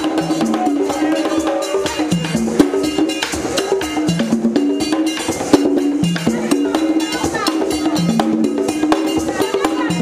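Haitian Vodou ceremonial music: voices singing a stepping melody over steady drumming and struck percussion, in a dense, continuous rhythm.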